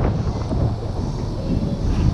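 Wind buffeting the camera microphone: a steady low rumble with no distinct strikes.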